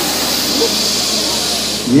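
Audience hissing like a snake: one steady hiss that stops just before the end, prompted as an imitation of a snake.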